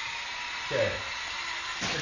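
A voice says "okay" once, over a steady hiss with a faint steady hum, and a brief click or rustle near the end.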